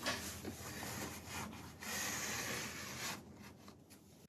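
A paper towel rubbed along a metal VW seat rail, wiping out old grease and grit, in two spells of rubbing with a short break between. The sound is faint and stops shortly before the end.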